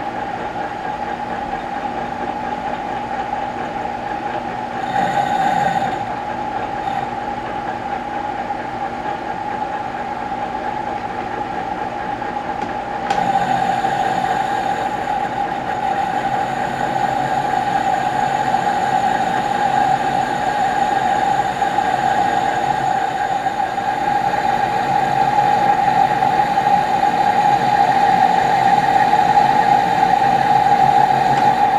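Victor lathe running under power, turning a spray-welded motor shaft with a carbide insert: a steady whine with a short louder patch about five seconds in, then louder and fuller from about thirteen seconds in.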